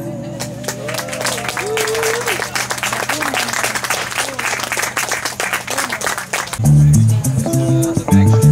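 Small audience clapping, with a few voices calling out, as a song ends. About six and a half seconds in, an electric guitar starts playing a loud riff of low notes.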